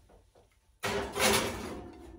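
Oven door shutting about a second in: a sudden loud clatter that fades over about a second.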